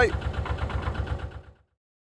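Narrowboat diesel engine running with a steady low chug, about ten beats a second, fading out about a second and a half in.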